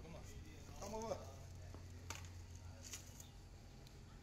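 A short bit of a person's voice about a second in, over a low steady hum, with a couple of faint ticks.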